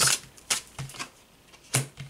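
A deck of tarot cards being handled as a card is pulled: a handful of short, sharp card snaps and taps, the loudest at the start and just before the end.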